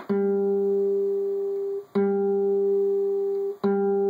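Acoustic guitar's fourth (D) string fretted at the fifth fret and plucked three times, each time sounding the same G note, which rings out for nearly two seconds before the next pluck.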